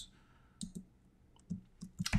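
A few faint computer keyboard key clicks in two pairs, about half a second in and again near the end, between stretches of near silence.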